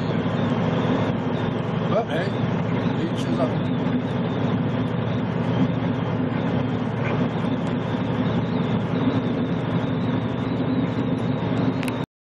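Steady in-cab drone of a semi truck cruising at highway speed: engine and tyre noise at a constant level.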